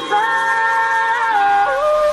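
Sped-up, high-pitched nightcore singing voice holding one long note, with the drums and bass dropped out beneath it; the note wavers briefly and steps down near the end.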